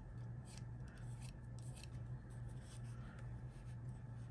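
Bone folder rubbing and scraping against small paper daisy petals in short, faint strokes as the petals are curled, over a steady low hum.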